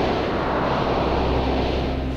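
Trailer boom sound effect fading away in a long rumbling decay, over a low steady drone.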